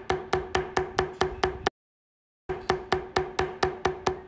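A mallet tapping a metal leather beveling stamp, pressing down the edges of carved lines in leather: quick, even strikes about five a second, with a short break about halfway.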